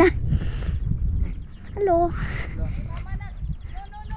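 Wind rumbling on the microphone, with a child's frightened cry of "no, no" about two seconds in and more whimpering near the end.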